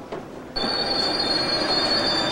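Steel wheels of a rail car squealing on the rails: a high, steady squeal that starts suddenly about half a second in, over the rumble of the car running.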